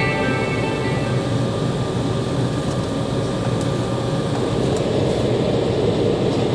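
Background music fading out in the first second, then the steady rumble inside the cabin of a jetBlue Embraer 190 with its GE CF34-10E turbofans running on the ground, growing a little louder near the end.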